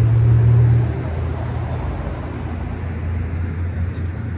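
A motor vehicle's engine running with a low, steady hum, loudest for about the first second and then dropping a little.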